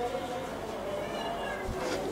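A man weeping close to the microphone with a handkerchief held over his face: a few short, high, wavering whimpers around the middle, over a faint sustained tone.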